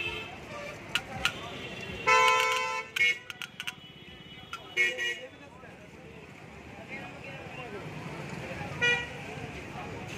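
Vehicle horns honking in street traffic: one long honk about two seconds in, the loudest sound, then two short toots around five seconds and another near the end, over a steady traffic hum and a few clicks.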